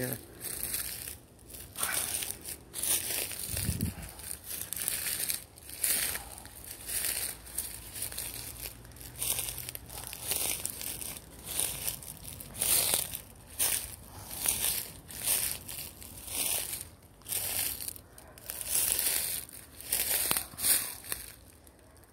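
Footsteps crunching through a thick layer of dry fallen leaves, one crackling step after another at walking pace.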